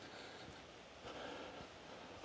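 Faint, steady rush of a distant creek gushing along in high flow.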